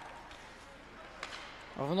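Faint ice hockey arena ambience from a game broadcast, with a single sharp knock a little over a second in.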